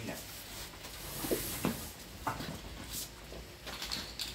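Quiet, indistinct men's voices with a few light knocks and clicks from hands working on the sheet-metal casing of a ventilation unit.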